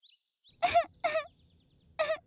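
A cartoon character's voice sobbing: two short, high-pitched sobs about half a second apart, over faint bird chirps.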